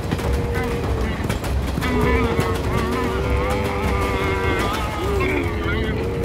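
Long held wordless vocal notes, gliding in pitch now and then, over a low steady rumble.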